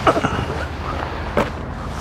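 Metal latch and hinged panel of an RV's exterior storage compartment door being worked open: a few light knocks, then a sharp click about a second and a half in.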